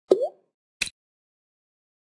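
Two software sound effects as word labels are dragged and dropped in an interactive exercise: a short rising bloop, then, about three quarters of a second later, a brief click.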